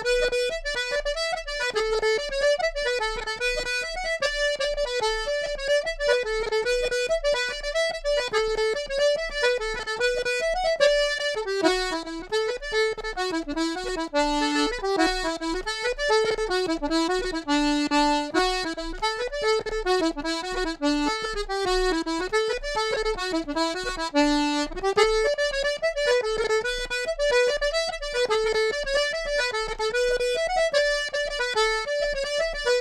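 Accordion playing a fast traditional tune, with a run of quick notes. Through the middle stretch the melody moves into a lower register before climbing back.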